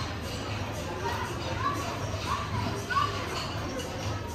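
Busy dining-room chatter of many people, with children's high voices calling out several times.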